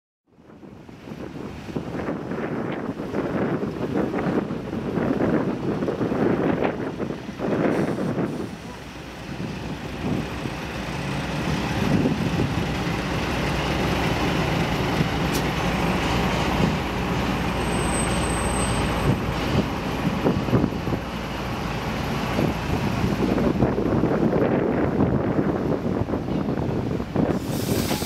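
Diesel engine of a small narrow-gauge shunting locomotive running steadily, a dense rumble that settles in from about ten seconds. Voices and irregular louder sounds lie over it in the first several seconds.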